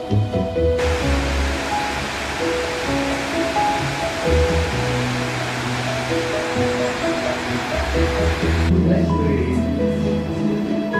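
Background music with steady melodic notes, over the rush of water pouring across a low concrete weir that starts abruptly about a second in and cuts off near the end.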